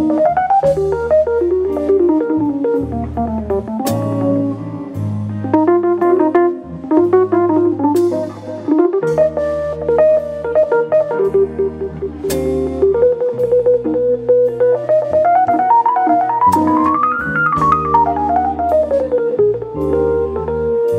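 Live jazz combo: a Technics P30 digital stage piano plays a melodic solo in quick note runs that climb and fall, over electric bass and a drum kit with occasional cymbal crashes.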